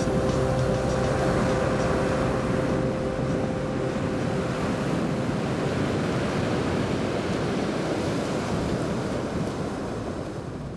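Steady wash of ocean surf. The last held notes of music fade out in the first few seconds.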